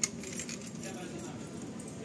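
A single sharp metallic click from door-lock hardware on a display rack, followed by low store background noise with faint voices.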